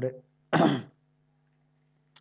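A man clears his throat once, a short rough burst about half a second in.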